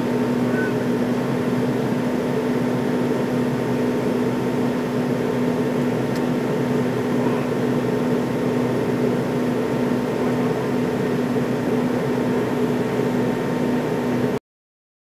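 Steady cabin noise of an American Airlines MD-80 in its climb: the drone of the rear-mounted Pratt & Whitney JT8D turbofans with a steady low hum tone, over a hiss of airflow.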